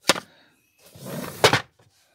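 Plastic storage boxes and cupboard fittings being handled: a sharp click at the start, then a scraping slide that ends in a loud knock about a second and a half in.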